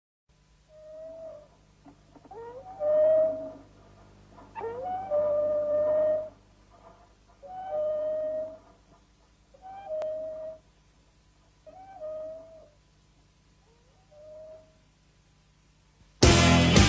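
An animal howling: about seven separate drawn-out calls, each sliding up quickly and then held, with the later ones growing fainter.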